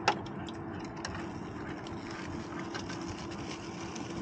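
Steady low-speed whine of an Axial SCX10 Pro RC rock crawler's electric motor and geared drivetrain as it creeps over rock, with one sharp click just after the start and a few faint ticks.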